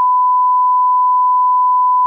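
Censor bleep: one loud, steady pure tone masking swear words in a recorded conversation.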